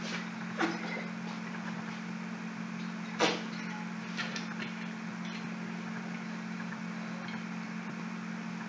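A steady low hum with a few scattered knocks and clicks; the loudest knock comes about three seconds in, and two faint clicks follow about a second later.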